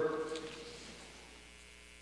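A man's voice dying away in the room's echo over about the first second, leaving a faint, steady low electrical mains hum.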